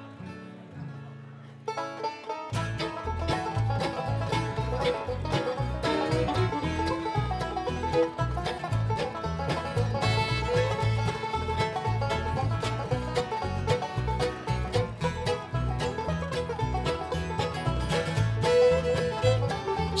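Live bluegrass band playing an instrumental passage on banjo, acoustic guitar, upright bass and fiddle. It opens quietly with a few held notes, and the full band comes in strongly about two and a half seconds in.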